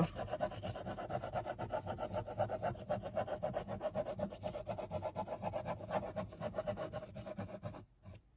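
Fine-tip plastic glue bottle squeezed with its nozzle dragging across kraft cardboard as it lays down lines of glue: a fast, continuous series of small scrapes that stops just before the end.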